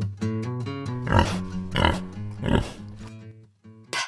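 Three pig grunts about two-thirds of a second apart over gentle plucked-guitar children's music. The music fades out after about three seconds.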